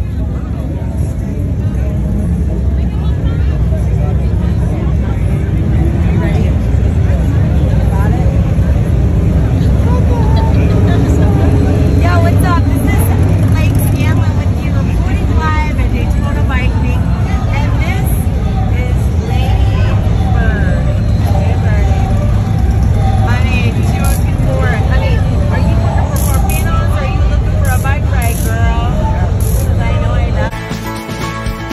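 Busy street at night: a crowd of voices chattering over a steady low rumble of vehicle engines.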